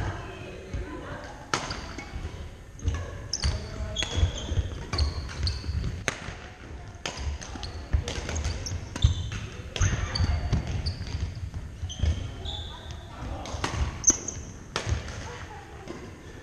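Badminton rally on a hardwood gym floor: repeated sharp racket hits on the shuttlecock, sneakers squeaking briefly, and feet thudding on the wood.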